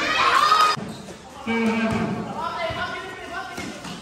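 Voices shouting across a basketball court, some held as long calls, with the thumps of a basketball bouncing on the concrete floor. There is a short lull about a second in.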